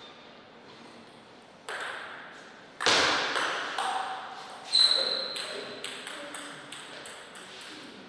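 Table tennis rally: a run of sharp ticks of the plastic ball striking bats and bouncing on the table. The loudest hits come about three and five seconds in, and quicker, fainter ticks follow.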